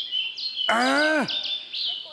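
Bird song sound effect: a songbird's high, clear whistled notes, stepping up and down in pitch in quick succession.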